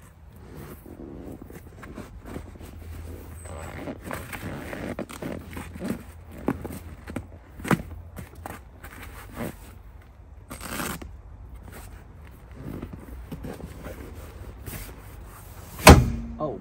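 Handling noise of seat covers being fitted to a vehicle's rear seat: fabric rustling and scraping, with scattered clicks and knocks. A sharp knock comes about halfway through, and a louder one right at the end.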